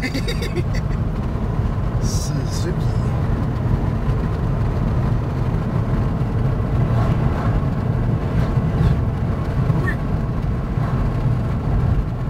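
Car driving at steady road speed, heard from inside the cabin: a steady low rumble of engine and tyre noise.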